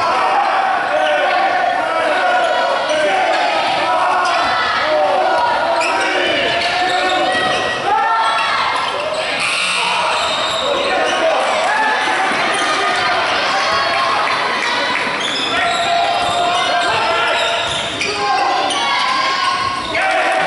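Live basketball play in a gym: the ball bouncing on the hardwood court, under a steady mix of indistinct voices from players and sideline, echoing in the large hall.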